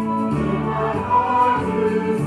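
A small church choir singing, several voices holding sustained notes that change about every second.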